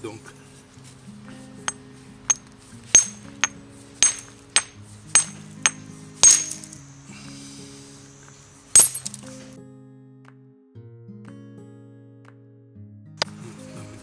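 Flint knapping with a hard hammerstone: a run of sharp stone-on-stone clinks about every half second as the edge of the stone core is trimmed to prepare the striking platform, then a single louder strike near nine seconds and one more near the end. Background music with long held notes plays underneath.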